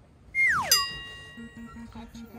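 Cartoon-style transition sound effect: a quick whistle that slides steeply down in pitch, then a bright chime note that rings and fades. A low, fast-pulsing musical tone starts near the end.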